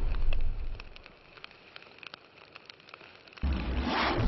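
Fire sound effect: a loud rumble of flame fades away, then faint scattered crackles. About three and a half seconds in, a second loud, low fire rumble starts abruptly.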